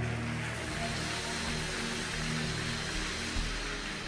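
Soft background music of long sustained chords at a steady, even level, under a steady wash of crowd noise in a large hall.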